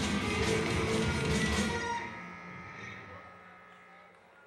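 Punk rock band playing live, with distorted guitars and drums hitting about three times a second. About two seconds in the song stops, leaving a held guitar note ringing through the amplifier and fading out.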